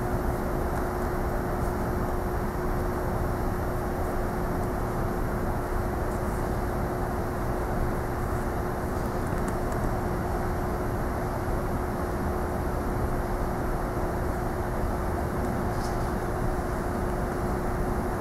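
Steady background hum and rush in a large room: an even low noise with a constant mid-pitched tone running through it, with a few faint soft ticks.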